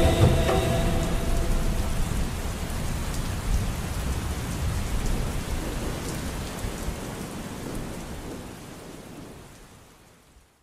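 Rainstorm ambience, steady rain with low thunder rumble, laid over the tail of the song. The last music notes die away in the first couple of seconds, and the rain then fades out gradually, nearly gone by the end.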